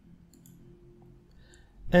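A few faint computer mouse clicks over a low steady hum, followed by a man starting to speak near the end.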